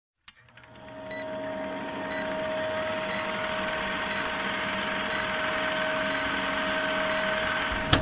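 Old-film countdown leader sound effect: a click, then a steady hiss and hum that fades in, with a short high beep about once a second as the numbers count down.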